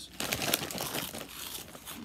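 A plastic crisp packet crinkling and crackling as a hand rummages inside it for a crisp.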